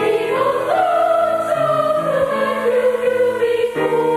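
Boys' choir of trebles singing in sustained, held notes, the melody slowly falling, with a change to a new chord near the end.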